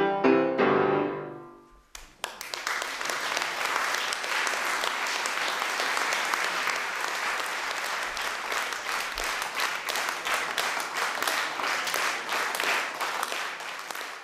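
A grand piano plays its final chords, which ring and die away in the first two seconds; after a brief silence, an audience applauds steadily, the clapping tapering off near the end.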